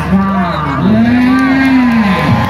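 A man's voice calling, breaking into a long drawn-out held note about a second in.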